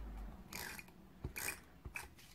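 A tape-runner adhesive dispenser being run across a small card-stock circle in about three short strokes, a faint ratcheting rasp with each pass.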